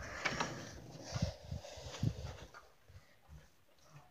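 Soft rustling and a few low, soft thumps from a handheld phone being moved and handled, dying away to near silence for the last second or so.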